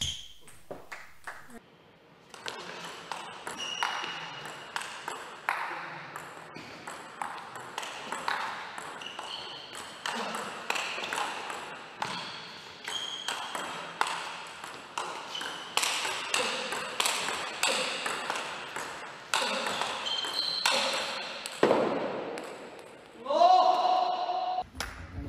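Table tennis rallies: the ball clicking off rackets and bouncing on the table in quick exchanges, point after point, with a short quiet break about two seconds in. Just before the end a player shouts.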